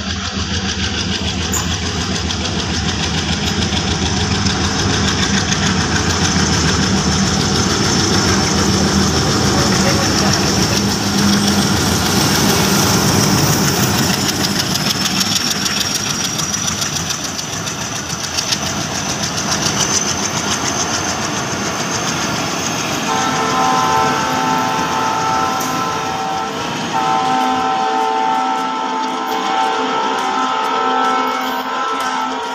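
Diesel locomotive hauling a passenger train approaching and passing close by: a low, steady engine drone with a high whine that rises slowly, and a rapid clatter of wheels rolling over the rails as the coaches go past. Background music with guitar comes in over the train sound about three quarters of the way through.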